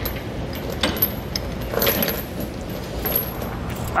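Steel half-inch chain clinking and jangling against a red lever-type load binder as the lever is heaved on, with a few irregular metallic knocks. The binder is straining against a chain that is too tight for it, and the lever will not close.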